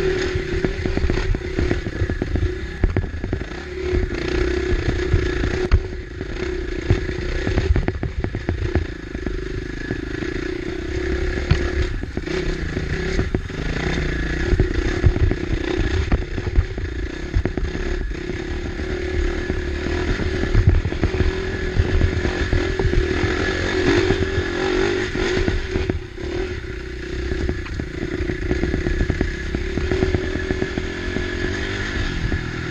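KTM 450 XC-F dirt bike's single-cylinder four-stroke engine running under constantly changing throttle, with frequent clatter and knocks from the bike bouncing over rocks.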